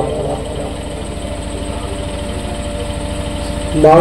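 An engine running steadily at idle, with a fast, even low pulse and a faint hum above it.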